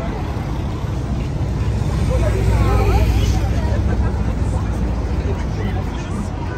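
Busy street noise: crowd voices chattering, with a vehicle's low rumble swelling to a peak about halfway through as it passes on the road alongside.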